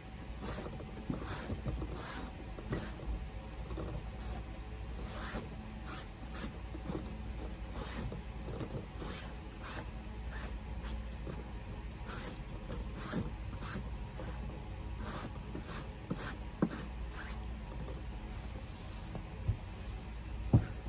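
Irregular rustling, rubbing and light clicks from a table lamp being handled and wiped down, over a steady low hum. A couple of sharper knocks come near the end.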